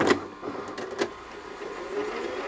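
Soviet 'Rus' film projector being switched on: a sharp click of its push-buttons at the start and another about a second in, with the mechanism running in a steady mechanical rattle.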